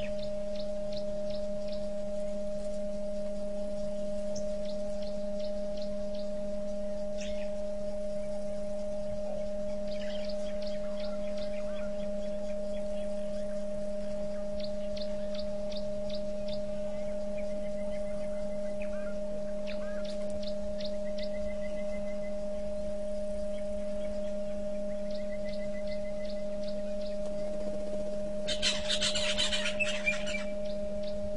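Steady electrical hum of two constant tones, one low and one higher, with short runs of faint high chirps every few seconds. A brief burst of hissing noise comes near the end and is the loudest moment.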